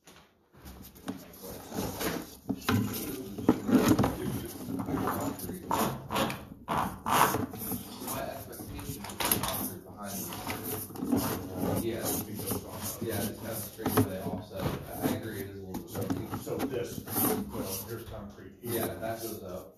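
Indistinct, unintelligible speech runs throughout, with scattered light knocks and handling noise.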